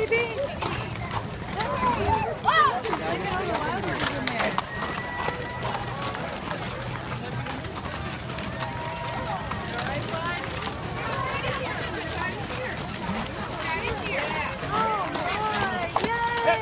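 A herd of Chincoteague ponies and riders' horses moving past at close range, hoofbeats sounding as scattered sharp clicks, under people calling out and talking throughout.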